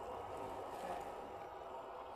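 Small electric motor and gearbox of a 1/10-scale RC crawler whirring steadily as it drives slowly through mud into shallow water.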